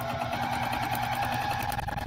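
Juki sewing machine running at an even speed, stitching a quilting line through soft vinyl, with a fast, regular stitch rhythm and a steady motor hum.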